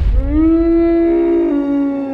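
Film sound-effect call of a Brachiosaurus: one long, low, pitched call that holds steady and then sinks in pitch as it fades near the end, over a deep boom at the start.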